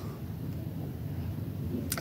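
Room tone in a pause between lines: a steady low hum with faint background hiss, ending with a brief click of breath as speech resumes.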